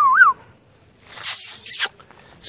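A person's short, wavering whistle calling a puppy, dipping and rising in pitch. About a second later comes a loud burst of hissing noise lasting just under a second.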